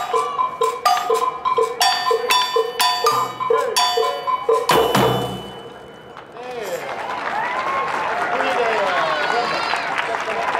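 Percussion ensemble playing a quick, even rhythm of ringing pitched strikes, closing with a heavier final hit about five seconds in that rings away. A crowd then cheers and calls out.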